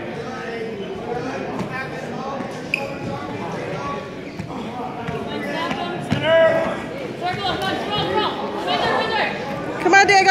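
Spectators' and coaches' voices echoing in a large gym: overlapping chatter, with louder calls from about six seconds in.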